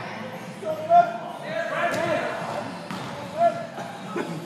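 Players shouting in an echoing indoor hall, with two sharp thuds of the football being struck, about a second in and again near the end.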